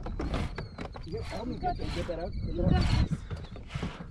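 Wordless gasps and strained vocal sounds from people in a boat while a big largemouth bass is being fought on a bent spinning rod. A low steady rumble runs underneath, and a thin high whine holds through the middle.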